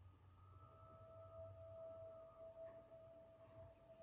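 Near silence, with a faint steady held tone from the DVD's soundtrack that comes in about half a second in, over a low hum, played through the computer's speakers.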